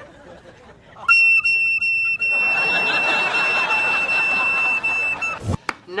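A recorder playing one long, high, steady note that starts about a second in and is held for about four seconds. A studio audience's laughter rises under it about two seconds in.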